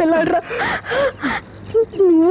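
A high-pitched voice making wordless vocal sounds: a short held note at the start, then brief gasping bursts about three a second.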